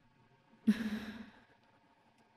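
A woman's single short, breathy exhale with a little voice in it, a sigh-like huff. It comes suddenly about two-thirds of a second in and fades within a second.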